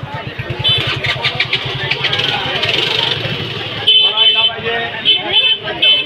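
A motor vehicle engine running close by with a fast, even low pulsing, over people's voices. The engine note stops about four seconds in, and several short high-pitched tones follow in quick clusters.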